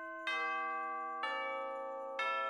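Intro music of bell-like chime notes, two struck about a second apart, each ringing on and overlapping the one before.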